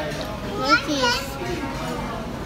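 A child's high voice among background chatter, with the loudest, sliding-pitch sounds in the first half.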